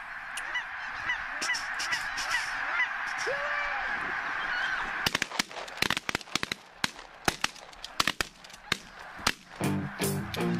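A large flock of geese honking in a dense chorus. After about five seconds it thins into a quick, irregular run of sharp cracks, and music comes in right at the end.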